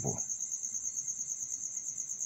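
Crickets chirping in a steady, high-pitched, rapidly pulsing trill.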